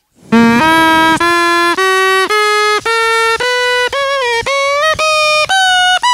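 A plastic drinking-straw reed pipe blown in a run of about ten short notes, each about half a second long and each a step higher than the last. It climbs from a low note to one about a octave and a half above, as the straw is snipped shorter while being blown: the shorter the tube, the higher the note.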